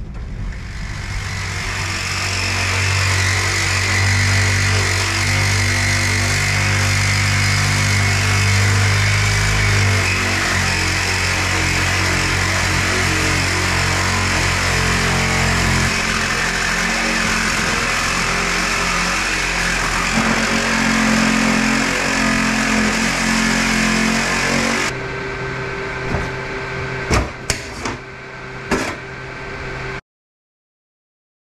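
Reciprocating saw cutting through a steel meter enclosure, running steadily and loudly for most of the time. It stops about 25 seconds in, and a few sharp knocks follow.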